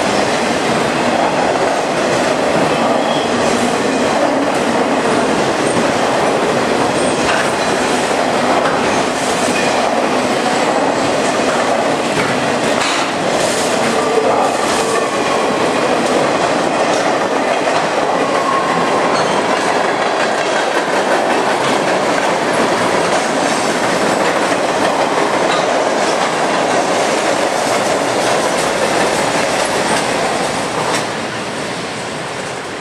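CSX freight train's autorack cars and then boxcars rolling past close by: a steady, loud rumble and clatter of steel wheels over the rail joints, with a faint wheel squeal now and then around the middle.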